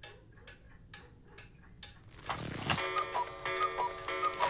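Pendulum wall clock ticking, about two ticks a second. About halfway through, music with steady sustained tones and a tinkling melody comes in.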